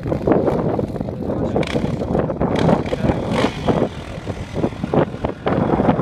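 Yamaha Raptor 660 quad bike's single-cylinder four-stroke engine running as it is ridden across the sand, heard from a distance and mixed with wind buffeting the microphone.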